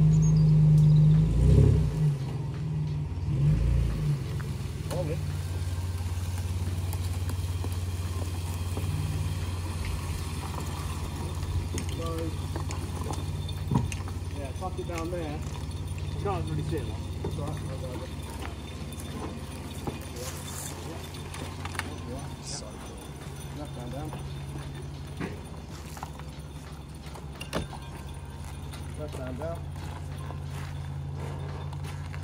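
A vehicle's engine pulling under load as it tows a dead car out on a rope: louder for the first few seconds as the tow is taken up, then a steady drone that eases near the end.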